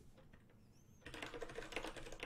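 Fast typing on a computer keyboard: a quick run of keystrokes starting about a second in.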